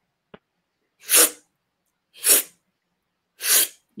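A man's three short, sharp breaths, about a second apart, with silence between: quick, forceful breaths of the explosive kind used in freestyle breathing. A faint click comes just after the start.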